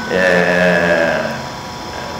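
A man's voice drawing out one long, level vowel sound for about a second, a held hesitation between phrases of speech. It then fades to the faint steady hum of an old recording.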